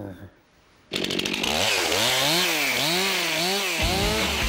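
Two-stroke chainsaw starting up about a second in after a brief hush, then running with its throttle revved up and down roughly twice a second. The sound changes abruptly near the end.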